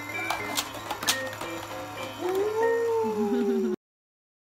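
Electronic baby toy playing a tune of short notes, with a few sharp clicks. About two seconds in, a long voice-like note rises and then slowly falls, and everything cuts off abruptly just before the end.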